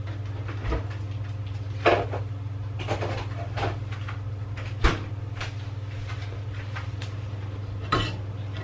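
Kitchen handling noises: a series of separate knocks and clunks as things are moved and set down on the counter, the loudest about two and about five seconds in, over a steady low hum.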